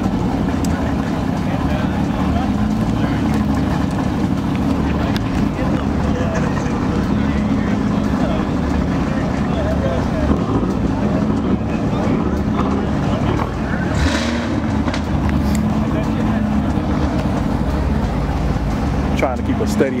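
A car engine running with a steady low drone, with no sharp revs or pops, and a brief hiss about two-thirds of the way through.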